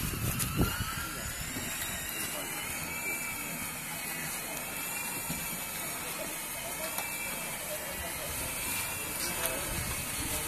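Lely Vector automatic feeding robot driving along the feed alley: a steady machine hum with a faint whine that wavers gently in pitch.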